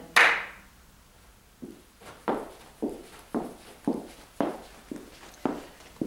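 A single hand clap at the very start, ringing briefly in the room. Then a woman's shoes walk steadily across a hard wooden floor, about two steps a second.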